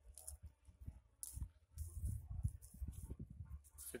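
Faint, uneven rumble of wind on the microphone, with scattered soft rustles and clicks.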